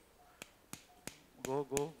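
Sharp, light taps of a surgical mallet on a suture anchor's inserter, three or four in quick succession, driving the anchor into the bone up to the inserter's black depth mark.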